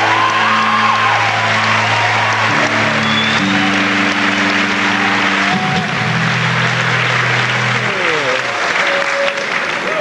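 Live rock band's electric guitars and bass holding sustained notes that step between pitches a few times and slide downward near the end, over a crowd applauding and cheering.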